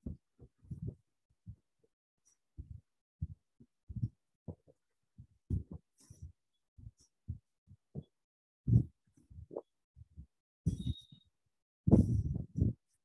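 Irregular, muffled low thumps and bumps, more than a dozen, each brief, with dead silence between them.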